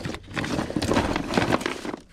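Small hard plastic toys and action figures clattering and knocking against each other and the plastic tote as hands rummage through the pile, a dense, continuous rattle.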